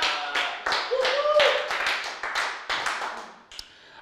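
Clapping, a quick irregular patter of hand claps mixed with voices, dying away about three seconds in.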